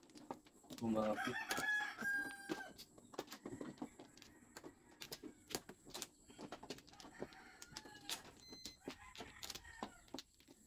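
A rooster crows once, about a second in, one call of roughly two seconds and the loudest sound here. Throughout, mahjong tiles click and clack as they are picked up, arranged and set down on the table.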